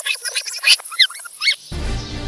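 A rewind sound effect: rapid, squeaky, high-pitched chirps of sped-up audio. Near the end it gives way to background music.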